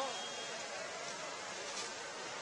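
Steady hissing rush of fire hoses spraying water onto the smouldering, collapsed structure, with steam coming off it.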